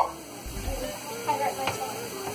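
A person's wordless pained vocal sounds, wavering in pitch, from burning a finger on hot tap water, over a faint steady hiss.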